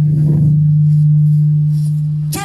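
Loud, steady low hum held at a single pitch, typical of mains hum from a stage sound system.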